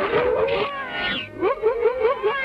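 Cartoon dog Pluto's voice giving a rapid string of short yelps and barks, with orchestral cartoon music underneath.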